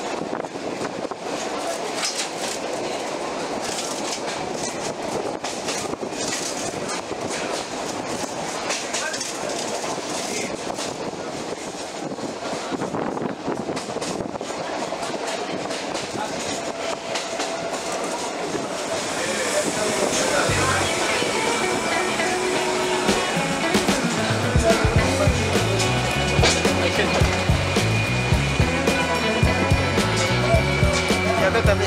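Metre-gauge passenger train running, heard from inside a coach by an open door: a steady rushing noise of wheels on rail and wind, with occasional clicks. About two-thirds of the way through, music with a steady beat comes in and becomes the loudest sound.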